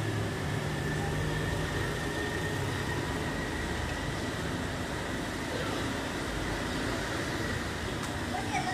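Steady low rumble and hiss of background noise, like distant traffic or machinery, with a faint steady high tone.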